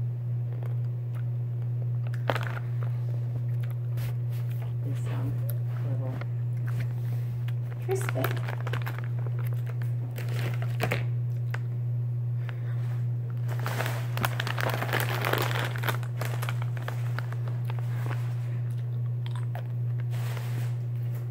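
A plastic candy bag crinkling as it is handled, with crunching as candy-coated gummies are bitten and chewed; the longest stretch of crinkling comes about two-thirds of the way through. A steady low hum lies underneath.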